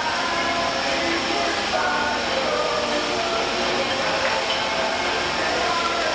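Bottling line machinery running steadily, with short ringing tones from glass beer bottles knocking together on the conveyor.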